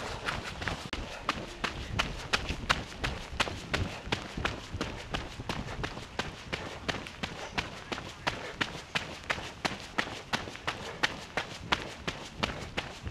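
Running footsteps on a wet gravel path, an even stride of about three steps a second.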